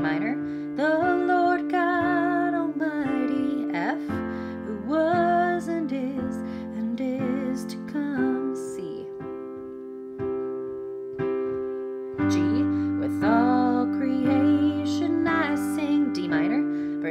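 Piano playing a simple block-chord accompaniment: D minor, F, C, then G, each chord held about four seconds. A woman sings the melody with vibrato over it.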